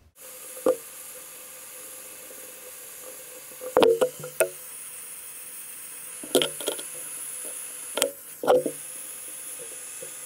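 Hand-held gas torch burning with a steady hiss while it melts casting metal in a small ladle, broken by a few sharp knocks, several in quick clusters.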